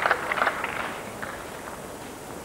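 A few scattered claps from a small tennis crowd at the end of a point, dying away in the first half second and leaving faint, steady background noise from the outdoor court.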